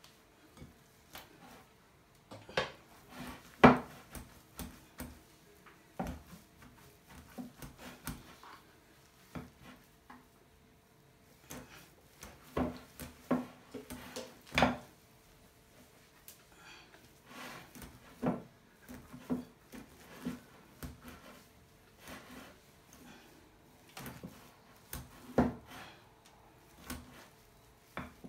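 Wooden spoon and other utensils mashing boiled potatoes in a glass bowl, knocking and scraping against the glass in irregular clicks and knocks. The loudest knock comes a few seconds in.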